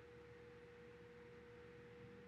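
Near silence: room tone with one faint, steady, unchanging tone.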